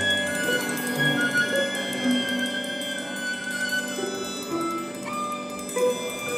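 A string quartet of two violins, viola and cello playing a classical piece with the bow, long held notes changing pitch in steps.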